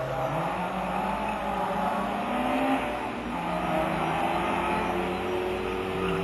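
Engine of a Group H slalom car revving hard as it accelerates through a cone course. Its pitch climbs, drops once about halfway through, then climbs again.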